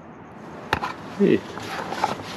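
A single sharp click about a third of the way in, then light scraping and rubbing as the engine's metal oil dipstick is handled and wiped with a rag.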